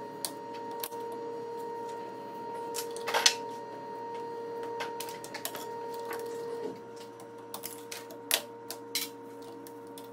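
Scattered clicks and taps of tools and metal parts being handled while a Showa A-Kit motocross shock is taken apart, the loudest cluster a little over three seconds in, over a steady hum that drops slightly about two-thirds of the way through.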